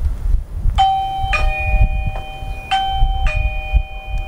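Eufy video doorbell's electronic ding-dong chime sounding twice as its button is pressed, each time a higher note followed by a lower one. A low rumble runs underneath.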